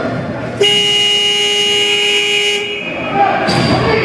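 Indoor arena horn sounding one steady note for about two seconds, starting just over half a second in, over the voices of players and spectators in the rink.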